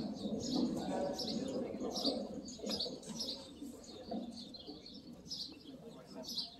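Small birds chirping in quick, repeated short calls over a low background rumble, growing somewhat quieter toward the end.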